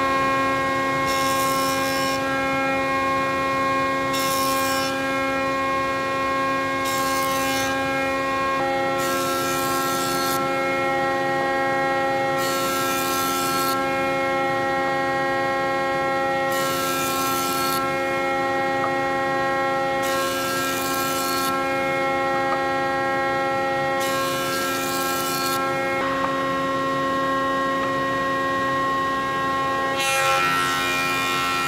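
Cast-iron Shimohira HD2 jointer running at full speed: a steady high whine from its motor and spinning cutterhead, with about eight short hissing bursts spread through.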